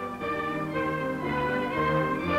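Orchestral background music led by strings, holding long notes that move to new chords a couple of times.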